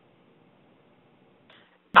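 Near silence: a faint, steady hiss of the webinar audio line between speakers, then a voice starts speaking right at the end.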